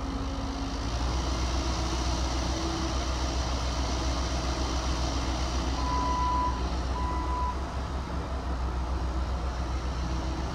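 Cat 308E2 mini excavator's diesel engine running steadily as the machine moves, with two short warning beeps a little past halfway through.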